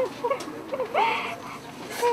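Women sobbing and weeping aloud: short, breaking whimpers that rise and fall between longer wailing cries.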